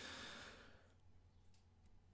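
A faint breath out, a soft airy exhale that fades away within the first second, then near silence.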